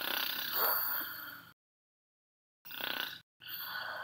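A voice making wordless vocal sounds for a cartoon character, in three short clips that cut to dead silence between them. The first lasts about a second and a half; two shorter ones follow near the end.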